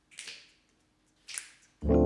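Sharp snap-like clicks, one shortly after the start and one about a second later, keeping time as a count-in. Near the end a piano chord over bass guitar comes in and holds.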